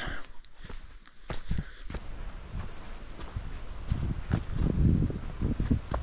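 Hiker's footsteps on a dirt forest trail: a run of dull thuds at walking pace, with some low rumble from handling or wind on the microphone.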